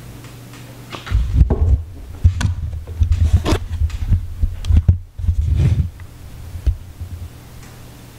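Handling noise from a camera-mounted microphone as the camera is picked up and moved: irregular low thumps and rumble with a few sharp clicks, from about a second in until about six seconds in.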